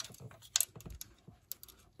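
Small ignition wrench clicking on a little nut as it is fitted and worked loose. The clicks are light and irregular.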